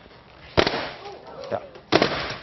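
Two sharp pops of balloons being struck with a tennis racket and bursting, one about half a second in and one near the end.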